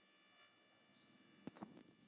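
Near silence: room tone with a faint steady hum and a couple of faint clicks about three-quarters of the way through.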